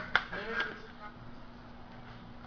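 A single sharp click a moment after the start, followed by a brief snatch of a man's voice, then low room tone.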